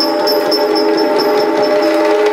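Yakshagana music without singing: the Bhagavata's small hand cymbals (tala) ringing in a steady beat of about four to five strokes a second over a sustained drone, with maddale drum strokes underneath.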